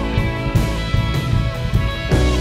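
Live band music with guitar and a drum kit over sustained held chords.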